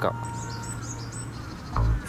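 Small birds chirping in a few short, high notes over a low steady hum, with a brief louder sound near the end.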